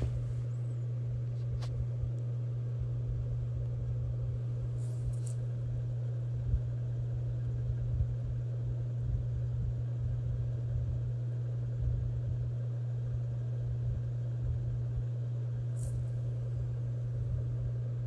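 A steady low hum with a rumble underneath, unchanging throughout, with a few faint ticks.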